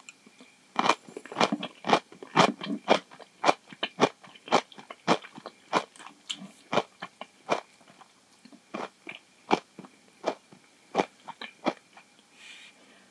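Close-miked crunchy chewing of napa cabbage kimchi, a run of crisp crunches about two a second. It starts about a second in and thins out in the second half.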